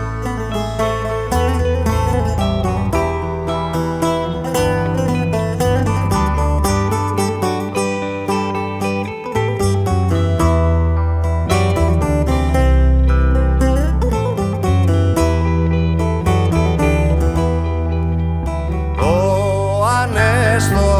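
Live band music in an instrumental passage: plucked string instruments play over a bass line that changes note every second or so. A sliding melodic line rises in about a second before the end.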